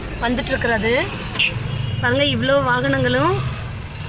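A person talking over the low rumble of vehicle engines and road traffic.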